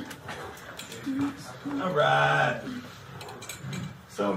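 A man's voice making short wordless vocal sounds, a brief one about a second in and a louder held one about two seconds in, with quiet room noise between.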